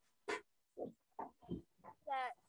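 Faint short murmured vocal sounds from a person, about five brief syllables in a row.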